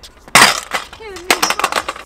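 A stunt scooter slams onto concrete a third of a second in, the loudest sound here, followed by a run of sharp clattering rattles as it skids and settles.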